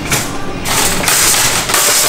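Metal shopping cart being pulled from a nested row and wheeled off: a loud, hissy metallic rattle of wire basket and castors, strongest about a second in.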